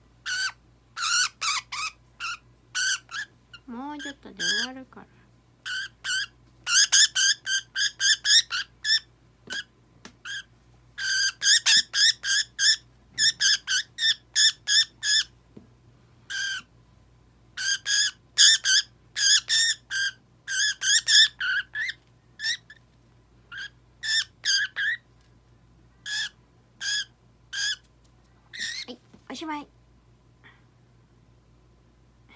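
Budgerigar squawking while restrained in the hand for a nail trim: bouts of short, harsh, high-pitched calls, several a second, broken by brief pauses.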